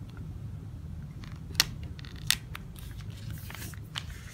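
A paper sticker being laid onto an album page and pressed flat by hand: two sharp clicks less than a second apart, then a soft rustle of paper as it is smoothed down.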